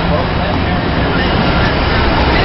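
City street ambience: a steady wash of traffic noise with faint voices mixed in.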